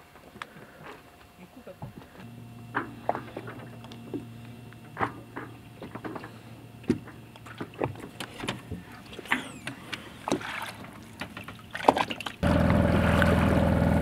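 Water slapping and ticking lightly against a boat's hull, heard as scattered small clicks over a faint low hum. About twelve seconds in, the sound cuts abruptly to the sailboat's engine running steadily and much louder as it motors along with no wind to sail.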